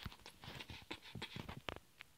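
Faint, irregular soft taps and rustles, like handling noise as toys and the camera are moved about.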